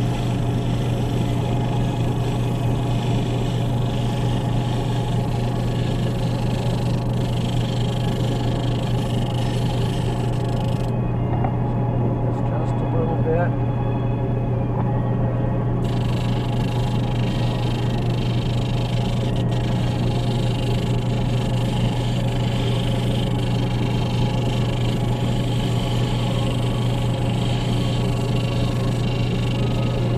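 Lapidary end lap sander running steadily with a strong low hum, a dopped gemstone held against its spinning sandpaper disc to sand it.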